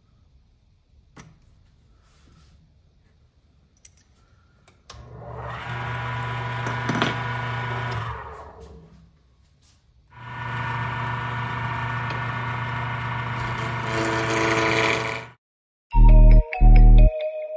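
Wood lathe: two faint clicks from the four-jaw chuck's key, then the lathe motor starts and runs with a steady hum and whine, winds down, starts again and runs on. Near the end a high hiss joins it as a turning gouge cuts the spinning wood blank, before the sound cuts off suddenly.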